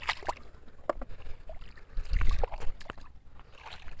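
Scattered light clicks and knocks of plastic toy trucks being gathered and handled, with water sloshing and a brief low rumble about two seconds in.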